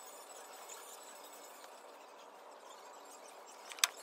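Faint store room tone, a steady low hiss with no voices, broken by one sharp click near the end.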